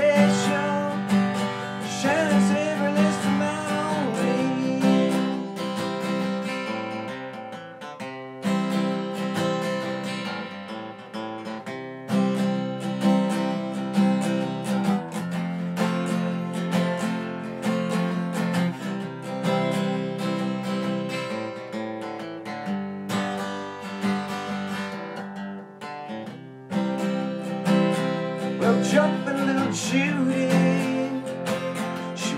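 Acoustic guitar strumming chords in a steady folk-blues rhythm, an instrumental passage of the song.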